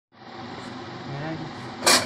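Steady background hum with faint voices, then one short, sharp, loud impact just before the end.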